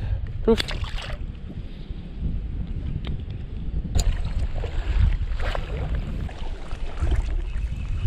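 Strong wind buffeting the microphone, a steady low rumble, with a sharp click about four seconds in.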